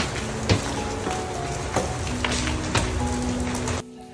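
Heavy rain pouring down, with sharp drips landing close by, over faint background music. The rain cuts off suddenly just before the end.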